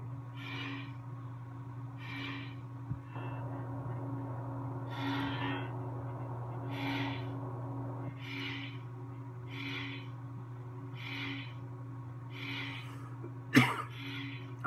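Verso lightsaber soundboard's idle hum, steady and low, while the blade colour cycles. Soft hissy pulses come about every second and a half, and one sharp, loud sound comes near the end.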